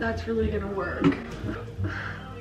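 A woman talking, with a short knock about a second in.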